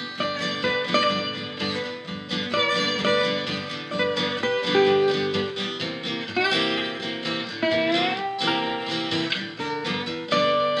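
Instrumental guitar duet: a National resonator guitar played with a slide over a strummed Taylor six-string acoustic guitar. Slide notes glide up in pitch a few times in the second half.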